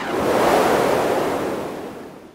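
Intro sound effect: a rushing noise like surf or wind that swells and then fades away toward the end.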